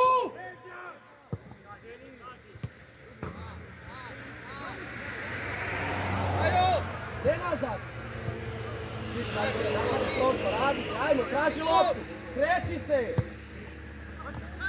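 Footballers' distant shouts and calls across the pitch, with a few sharp thuds of the ball being kicked. A rushing background noise with a low hum builds in the middle.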